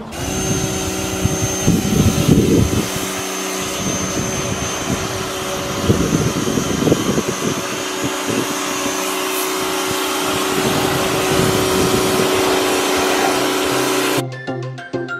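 Pressure washer running steadily, its motor and pump giving a steady drone under the hiss of the water jet, stopping suddenly at the end.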